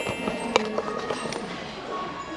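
Background music over shop ambience, with a sharp click about half a second in.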